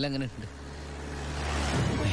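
A swelling rush of noise over a low steady drone, growing louder through the second half: a film soundtrack whoosh building into a cut. A man's voice ends a word at the very start.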